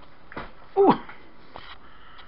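A man's short exclamation, 'ooh', sliding down in pitch, about a second in.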